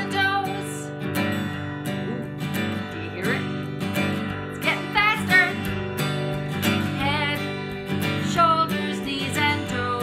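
Acoustic guitar strummed in a steady, upbeat children's song, with a woman's singing voice coming in at times over it.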